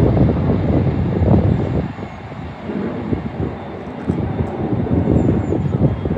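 Gusty wind buffeting the microphone: a heavy, irregular low rumble that eases for a couple of seconds in the middle, then picks up again.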